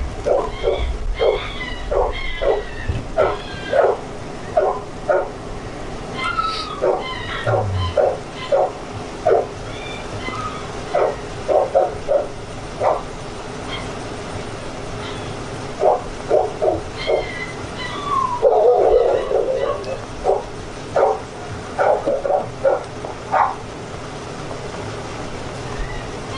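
A dog barking over and over in runs of quick barks, with a pause of a few seconds around the middle.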